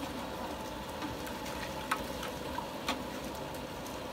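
Wooden paddle stirring broth in a large stainless-steel noodle pot: steady watery noise with a few light clicks.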